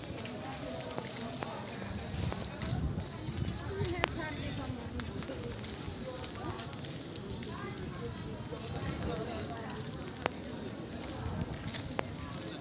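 Outdoor background of indistinct voices of people talking around, over a low, uneven rumble on the microphone, with two sharp clicks, one about four seconds in and one near the end.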